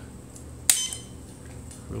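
A single sharp click with a brief metallic ring about two-thirds of a second in: the power switch being flipped on while the Enter key is held, powering up the iOptron 8407 hand controller into its firmware-upgrade mode.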